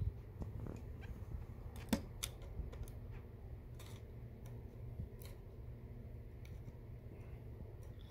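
Screwdriver straining at a very tight feed-dog screw on a Juki DDL-5550 industrial sewing machine: a few faint metal clicks and scrapes over a low steady hum.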